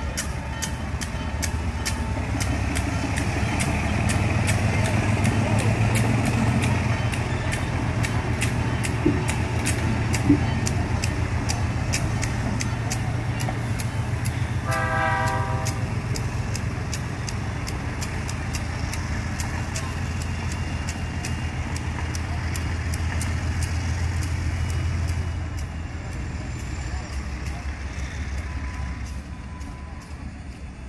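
Diesel locomotives rumbling slowly past, their wheels clicking over the rail joints in an even rhythm. A short horn toot sounds about halfway through, and the rumble falls away near the end as the locomotives move off.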